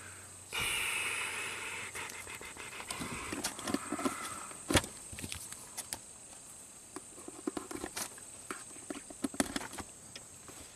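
Test leads and a meter being handled on carpet: a rustle near the start, then scattered small clicks and knocks, with one sharp click just before the middle standing out as the loudest.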